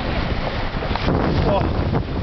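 Wind buffeting the microphone over the rush of seawater along the hull of a moving boat.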